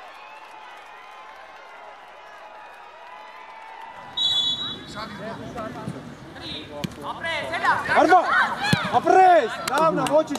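A referee's whistle is blown once, briefly, about four seconds in. A few sharp thuds of a football being kicked follow, then loud, excited shouting from players and coaches in the second half.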